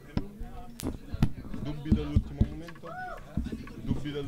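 Scattered knocks and bumps of gear being handled on a small stage, about seven sharp ones, over low indistinct chatter.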